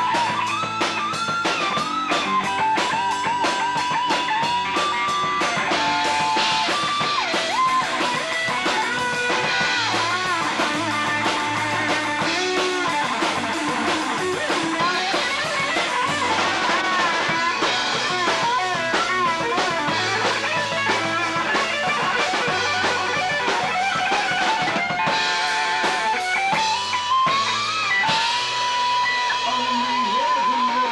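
Live rock band playing an instrumental section: an electric guitar takes a lead solo full of string bends and vibrato over drum kit and bass, with long wavering held notes at the start and near the end.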